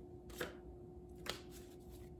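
Tarot cards being shuffled by hand: a few soft slaps of the cards, the two clearest about a second apart.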